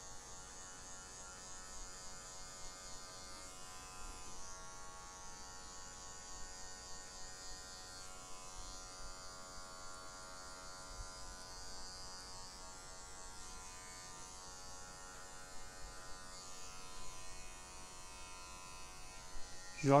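Electric hair clipper running with a steady buzz as it cuts short hair, blending a fade with its blade lever set partway open.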